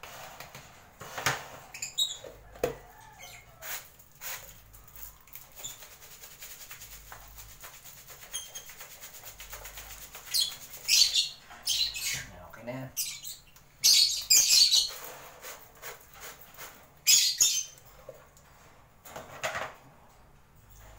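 A metal spoon stirring a powdered vitamin and dextrose mix in a plastic jar, clicking and scraping rapidly against its sides. Then, from about halfway, the jar is shaken to blend the powder, in several loud short rattling rushes.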